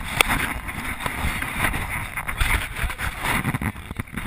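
Wind on a GoPro's microphone over the low rumble of a boat under way, with a sharp knock from the camera being handled just after the start.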